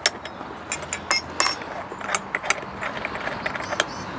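Small metallic clicks and clinks of a brush cutter blade's retaining nut being spun off its threaded shaft by hand, with the steel blade and cup washer knocking against the gearhead. A few sharper, ringing clinks fall in the first second and a half.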